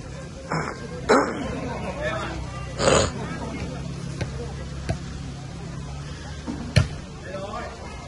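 Men's voices calling out during an outdoor volleyball game, three loud shouts in the first three seconds, then sharp slaps of the ball being struck, one faint and one loud about five and seven seconds in. A steady low hum runs underneath.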